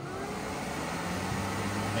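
WMS Blade slot machine cabinet's cooling fans running just after power-on: a steady rushing noise with a faint low hum beneath, growing slightly louder.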